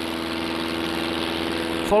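Light propeller aircraft's piston engine running steadily at one constant pitch, a continuous drone heard from outside the aircraft.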